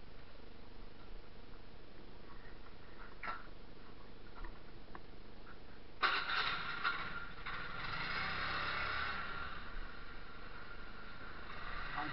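A small motorcycle's engine: a sudden burst of noise about halfway through, then the engine running on with a low rumble. Before that there is only a faint hiss with a few light clicks.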